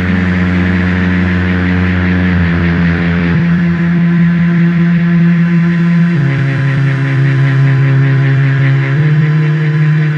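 Power-electronics track of analog electronics: loud sustained low drones under a dense hiss of noise, the drones shifting pitch in steps every few seconds.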